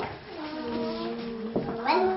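A voice holding one long, steady sung note, sliding up into it at the start and breaking off about a second and a half in.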